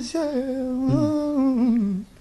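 A man's voice humming a short melody in long held notes, the tune wavering slightly and sliding down in pitch near the end.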